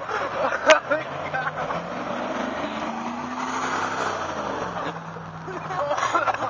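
A car driving past on the street, its engine and tyre noise swelling to a peak about halfway through and then fading, with the engine tone rising and falling. A sharp knock comes about a second in.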